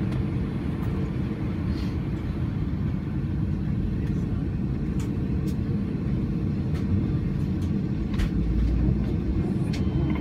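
Cabin noise of an Airbus A320 taxiing: a steady low rumble of the idling engines and cabin air, with a few faint clicks. The rumble deepens briefly about eight seconds in.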